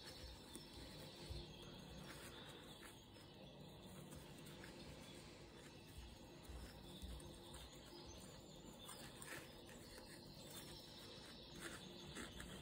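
Near silence, with a few faint brief rustles and clicks of jute twine being worked with a crochet hook.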